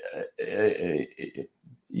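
A man's voice over a video-call link, hesitant and broken by short pauses, likely drawn-out filler sounds between words.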